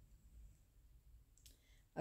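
Near silence: room tone with a faint low hum and one faint click about one and a half seconds in.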